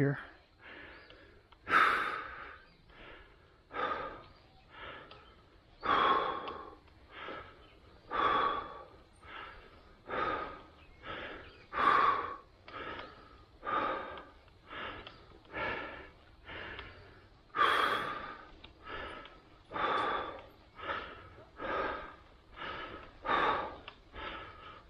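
A cyclist breathing heavily and rhythmically from exertion, about one loud breath a second.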